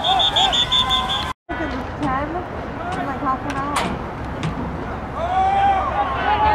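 A referee's pea whistle blowing a shrill trill for about a second and a half as the play is whistled dead, cut off abruptly a little over a second in. Spectators' shouts of "oh" and crowd chatter run around it.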